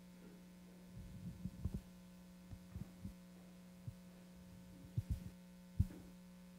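Steady low electrical hum from the hall's sound system, with about ten soft, irregular low thumps scattered through it.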